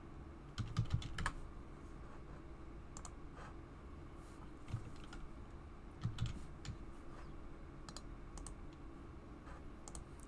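Computer keyboard being typed on in short, irregular bursts of a few keystrokes, with pauses of a second or two between them.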